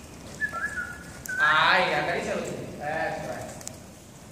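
A short held whistle, then a long wordless vocal call and a shorter second one, given as voice cues to a horse being lunged.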